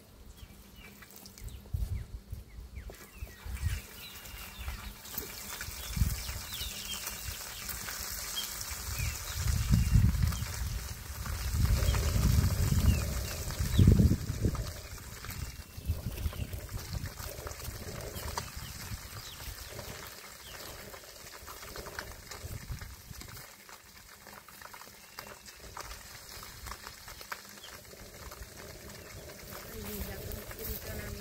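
Food frying in a pan on a portable gas stove, with a steady sizzle. Loud, irregular low gusts of wind buffet the microphone for a few seconds in the middle.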